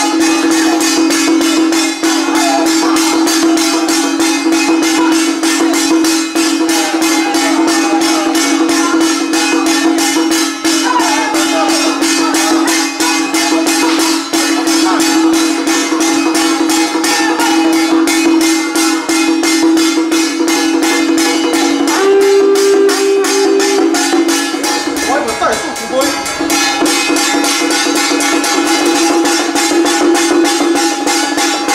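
Temple ritual music: a loud, steady droning tone under fast, continuous jingling or rattling percussion, with a wavering chanting voice over it. About two-thirds of the way through, a higher note is held for a couple of seconds.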